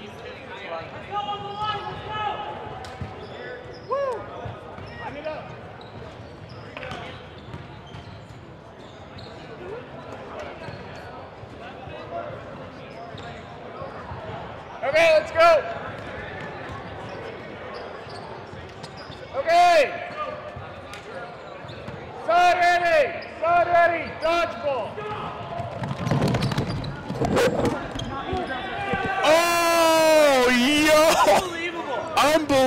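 Dodgeball game in a large gymnasium: balls bouncing and smacking on the hardwood floor amid players' echoing shouts, with several loud shouted calls in the second half.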